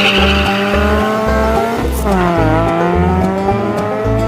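Dacia Logan race car accelerating hard away under full throttle. The engine rises in pitch, drops with an upshift about two seconds in, then climbs again. Music with a steady beat plays over it.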